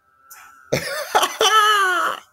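A man's vocal outburst: a couple of short, sharp cough-like bursts, then one long drawn-out cry that slowly falls in pitch.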